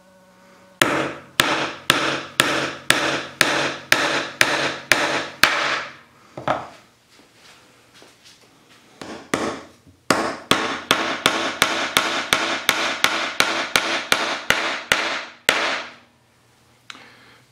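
A hammer made from an epoxy-resin-hardened book (book micarta) driving nails into a pine board: a run of about ten sharp strikes, two a second, then a pause and a second, quicker run of about fourteen strikes, each with a short ring.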